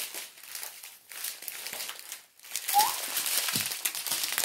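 Small plastic bags of diamond painting drills crinkling as they are handled, on and off, dropping away briefly about one and two seconds in.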